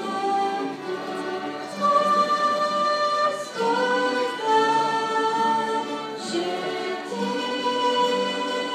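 A church orchestra, mostly violins and other strings, playing a slow piece in long held notes that change every second or two.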